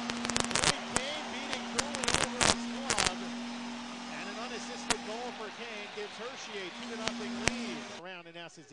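Arena goal horn sounding a long steady tone, with a crowd cheering and a series of sharp cracks, most of them in the first three seconds. It marks a home goal for the Hershey Bears.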